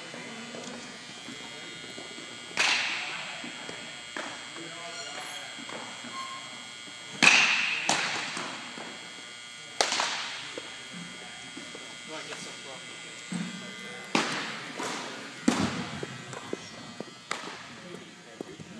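A baseball smacking into leather gloves, several sharp echoing smacks with gaps of a few seconds, the loudest about seven seconds in. The hard walls and floor of a large gymnasium make each smack ring out.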